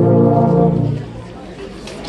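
A massed tuba and euphonium choir holds the final chord of a carol and cuts off about a second in, the lowest notes lasting a moment longer. Applause begins at the very end.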